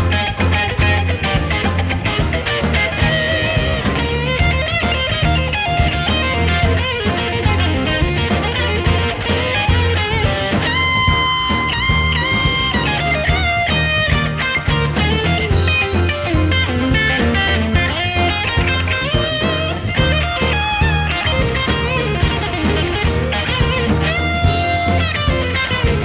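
Blues-rock band playing an instrumental passage: lead electric guitar with held, bending notes over bass and drums.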